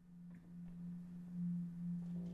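A single low, pure note swelling in and held steady, its loudness wavering gently: the soft opening note of a live band piece.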